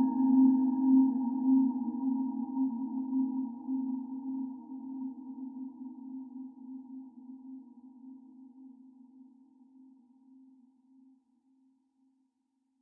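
Background music: one long, low sustained note with ringing overtones, slowly fading away over about ten seconds to silence.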